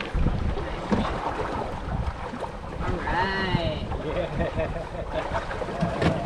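Wind buffeting the microphone and water rushing past a small sailboat under sail. A brief high-pitched voice comes about halfway through.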